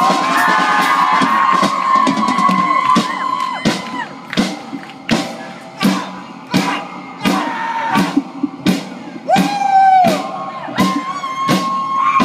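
Live indie rock band playing an instrumental stretch: a steady drum beat with guitars and keyboard, long held notes over it, and shouts and whoops from the performers or crowd.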